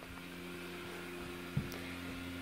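Airblown inflatable's electric blower fan running with a steady hum, with a soft low thump about one and a half seconds in.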